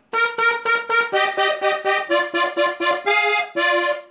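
Diatonic button accordion playing a short phrase of detached notes on its treble buttons, drawn from a scale in sixths. Each note or pair is repeated about four times before moving on, giving four groups that step through the phrase.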